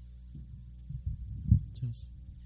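Dull low thumps and knocks as people get to their feet, the loudest about a second and a half in, close enough to the microphone to sound like it was bumped. A steady electrical hum from the sound system runs underneath, and there is a short hiss near the end.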